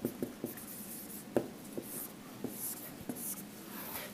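Dry-erase marker writing on a whiteboard: a string of short, squeaky strokes and light taps.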